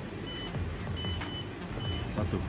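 A high electronic beep repeating about three times, roughly once every 0.7 seconds, over background music.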